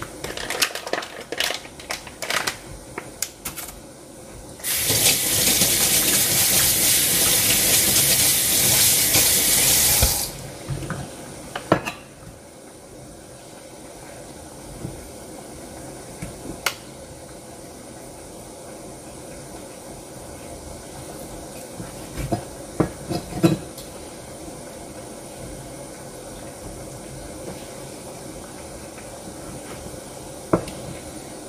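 Kitchen tap running for about five seconds, after a run of quick knocks and clatter from kitchen work; a few scattered light knocks follow.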